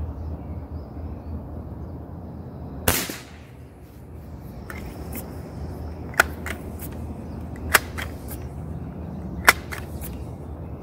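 Sheridan Silver Streak .20 calibre multi-pump pneumatic air rifle fired once about three seconds in, a sharp crack. Its pump lever is then worked to recharge it, with a sharp clack about every second and a half as each stroke closes.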